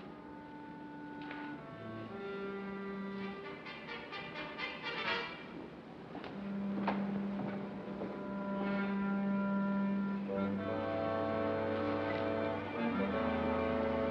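Orchestral film score playing slow, tense held notes that grow louder, with low notes joining about ten seconds in.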